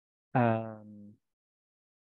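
A short low pitched tone, under a second long, that sets in sharply and fades away.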